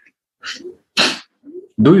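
A stifled sneeze: a breathy intake of air, then a short sharp burst of air about a second in.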